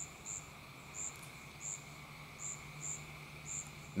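Faint, short, high-pitched insect chirps, repeated about twice a second at uneven intervals, over a faint steady hum.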